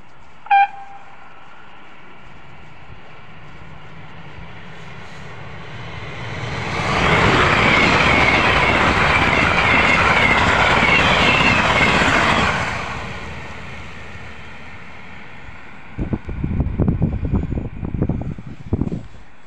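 Siemens Velaro RUS "Sapsan" high-speed electric train going by at speed: a short horn blast about half a second in, then a rush that builds, holds loud for about five seconds as the train passes, and fades away. Near the end, irregular gusts buffet the microphone, the wake of the passed train.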